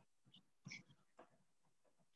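Near silence, with a few faint brief noises.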